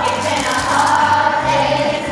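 A group of young voices singing together in unison over instrumental music with a bass line.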